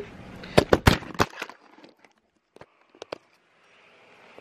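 A quick run of sharp clicks and taps from a small plastic makeup product being handled, about a second in, then a few faint clicks.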